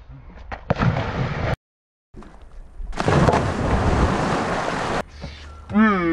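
A splash as a person jumps feet-first into a swimming pool, a short noisy burst about a second in. After a brief gap, a louder, steady rushing noise lasts about two seconds.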